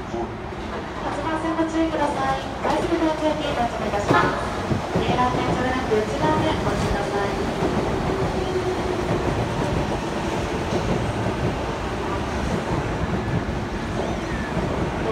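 JR East E233-series electric commuter train pulling into the platform and running close past, slowing as it arrives: a steady rolling noise of wheels on rails that grows louder about a second in as the cars reach the platform.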